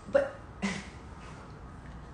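Two brief vocal sounds from a woman, about half a second apart, each cut short.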